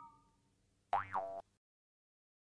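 Cartoon "boing" sound effect about a second in: a short, springy pitched tone that dips and swings back up. Before it, the ring of a chime fades out.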